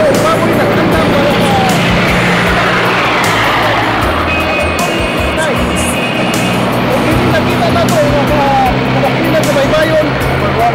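A man talking over a steady motor vehicle engine and music playing in the background.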